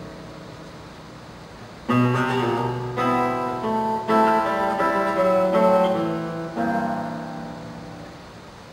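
Solo classical guitar played fingerstyle on nylon strings. A soft chord rings and dies away, then about two seconds in a loud chord starts a passage of plucked notes that fades toward the end.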